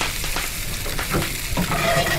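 Sweet potato hash with onions and kale sizzling in a hot skillet, with a duck egg frying in a second pan; a steady frying hiss. A brief voiced murmur comes a little past a second in.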